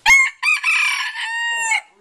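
A rooster crowing once: a few short arched notes, then a long held note that stops shortly before the end.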